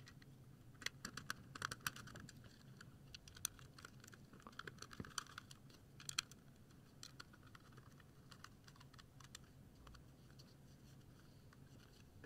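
Faint, irregular clicks and ticks of a small screwdriver driving small screws into a 3D-printed keyboard case, busiest in the first half.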